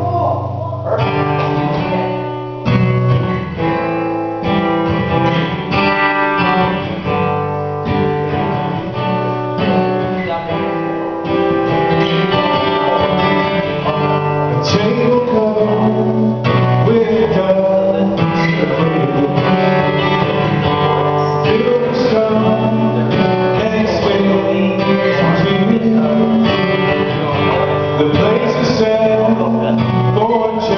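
Acoustic guitar played through a PA, strumming chords as the song begins; a man's singing voice comes in over it partway through.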